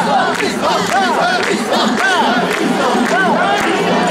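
Mikoshi carriers shouting their rhythmic festival chant in unison while shouldering a portable shrine. Many voices rise and fall together over and over, over a constant crowd din.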